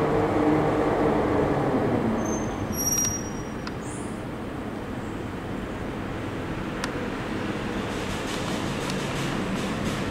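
The Schlossbergbahn funicular car running on its track: a steady rumble with a low hum, louder for the first three seconds and then quieter. A brief high squeal sounds about three seconds in, and a single click near seven seconds.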